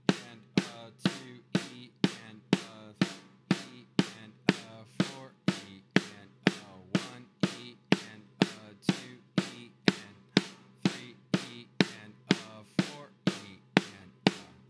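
Snare drum struck with wooden sticks in double strokes, left hand leading (left-left, right-right), evenly spaced strokes about two a second, each ringing briefly.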